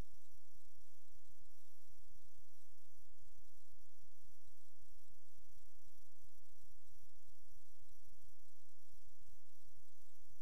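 Steady electrical hum and hiss, with two faint high-pitched whines and an irregular low rumble underneath.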